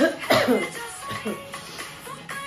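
A woman coughing: two loud coughs in the first half-second, then a weaker one about a second in, over the music of the song playing.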